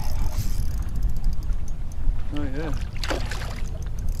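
Steady low rumble of wind buffeting the microphone on an open boat. Near the end a hooked redfish splashes briefly at the surface beside the boat.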